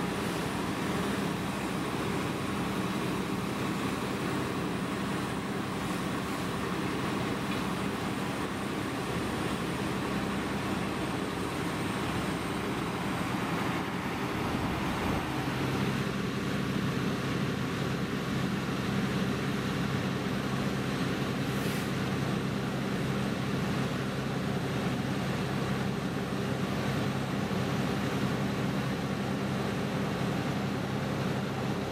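Fire engine running steadily at the scene, pumping water to the hose lines: a constant low engine drone under a broad hiss. The drone's pitch changes about halfway through.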